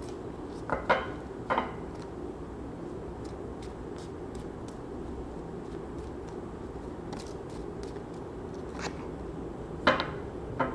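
A small deck of cards being shuffled by hand. Faint ticks of cards sliding against each other, with a few sharper snaps or taps about a second in and again near the end.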